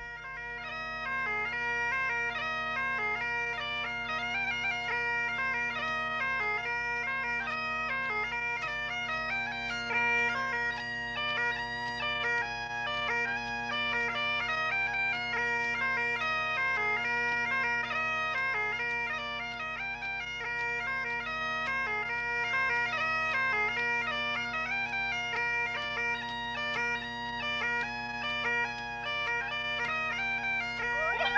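Scottish bagpipes playing a tune: steady drones held underneath a chanter melody that moves from note to note without a break.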